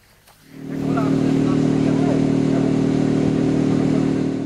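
A motor engine running at a constant speed, a loud steady drone that fades in about half a second in, with faint voices behind it.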